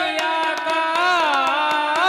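A man singing a devotional folk melody into a microphone, his voice sliding and wavering through ornamented notes, over a steady held instrumental tone and regular hand-drum strokes.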